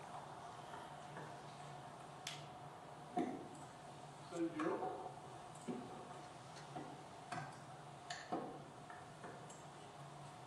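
Faint, irregular clicks and taps over a steady low room hum, with one brief voice-like sound about four and a half seconds in.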